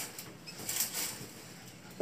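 A shower curtain rustling faintly in a few short brushes as it is handled.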